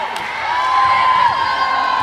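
Girls' voices cheering and chanting, with long drawn-out shouted calls held over one another.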